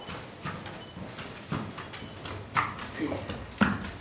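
A horse's hooves clip-clopping in irregular steps on a hard floor as it walks round a stone oil mill, turning the millstone. The loudest step falls near the end.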